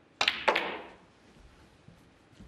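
Snooker break-off shot. The cue tip strikes the cue ball with a sharp click, and about a third of a second later the cue ball smashes into the pack of reds with a louder crack. A short clatter of balls knocking together follows and quickly dies away.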